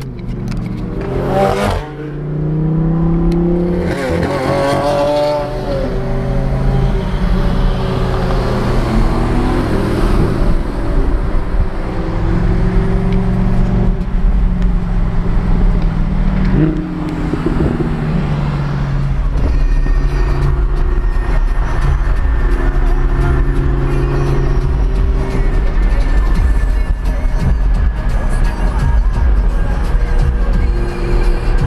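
Sports car engine heard from inside the cabin, pulling through the gears on a manual gearbox. The revs climb and drop at each shift in the first few seconds and again around the middle, then settle into a steady cruising drone.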